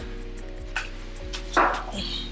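Background music with a steady beat and held chords. About one and a half seconds in there is a short, loud noisy burst.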